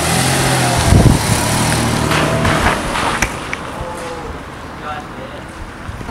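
A Volkswagen Passat sedan's engine running as the car moves, with a steady low engine note. The note is loudest about a second in and fades out after about three seconds.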